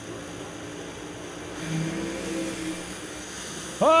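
Two supercharged, methanol-burning Top Alcohol Funny Car engines at full throttle off the start line, the engine noise swelling for about a second and a half near the middle. The tires shake and the driver pedals the throttle.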